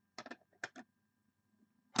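Hard plastic graded-card slabs clicking against each other as one is set down on a stack: a few short, sharp clicks in quick succession within the first second.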